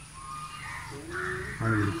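A few short bird calls in the background, then a man's voice starts again near the end.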